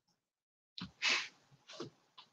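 Three short, breathy bursts of a person's voice, starting about a second in, the middle one the loudest.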